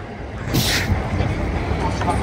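City street traffic noise: a steady low rumble, with a short sharp hiss about half a second in.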